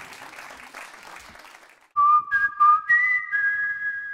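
Audience applause thinning out, then about two seconds in a short electronic outro jingle: three pure, whistle-like tones enter one after another over a few light clicks and hold together as a chord. The jingle is much louder than the applause.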